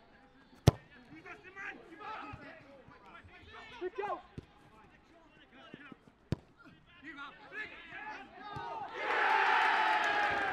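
A football kicked hard on an artificial pitch: two sharp thuds, about a second in and again after six seconds, with distant players shouting. Near the end a crowd cheer rises as a goal goes in.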